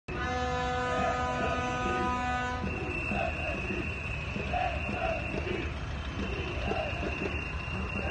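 Indistinct voices and street noise under a steady pitched hum with many overtones, which gives way about two and a half seconds in to a single thin, high whine that fades out a few seconds later.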